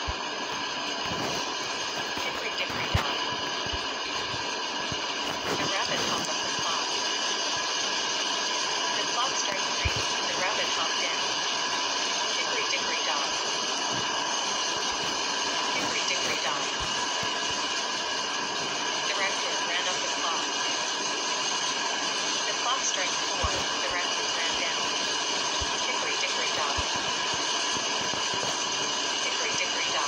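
Indistinct voices, too faint to make out, over a steady background noise, with a few faint clicks.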